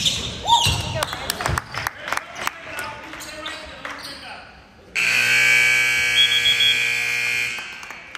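Gym scoreboard horn sounding the end of the game as the clock runs out in the fourth quarter: a loud, steady buzz lasting about two and a half seconds, starting about five seconds in. Before it, a basketball bounces on the hardwood floor.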